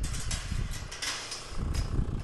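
A vehicle's engine idling, heard from inside the cab, under a steady hiss, with a few brief knocks.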